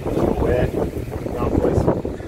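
Wind buffeting the microphone: a loud, uneven low rumble, with faint fragments of voice mixed in.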